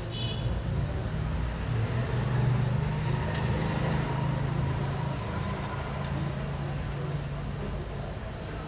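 Low, steady engine hum of a passing motor vehicle, growing louder over the first two or three seconds and then slowly fading.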